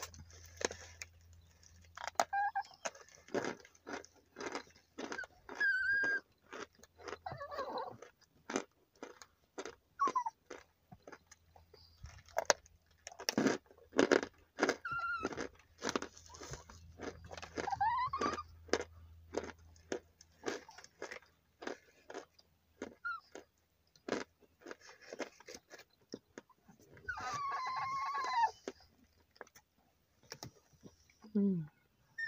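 Crunching and chewing of hard chunks of cornstarch eaten by the mouthful, a rapid run of crisp crunches. A small dog whines now and then, with a longer warbling whine near the end.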